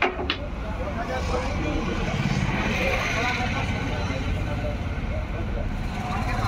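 Indistinct voices talking in the background over a steady low rumble, with two sharp clicks right at the start.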